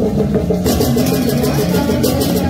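Balinese gamelan music: a fast repeating pattern of struck notes, about six or seven a second, over sustained lower tones, with cymbals clashing in from just over half a second in.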